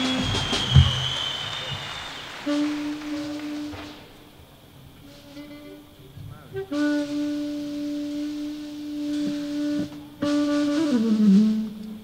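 Live band music opening sparsely: long held notes on a wind instrument, separated by pauses, with one note bending down in pitch near the end. A single knock sounds about a second in.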